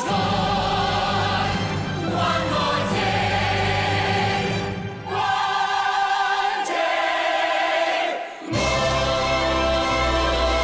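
Full chorus of a stage musical's cast singing long held notes together over an orchestra, with two brief dips in level, about five and eight seconds in.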